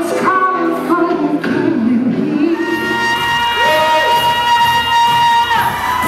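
A man singing into a handheld microphone over backing music, with melodic phrases early on and then one long held note through the second half.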